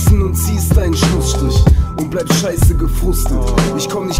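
German-language hip hop track: a rapper's voice over a beat with heavy bass and regular drum hits.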